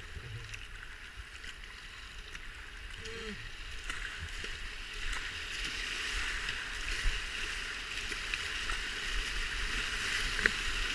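River rapids rushing around a kayak, growing louder after a few seconds as the boat runs into the white water, with scattered sharp splashes.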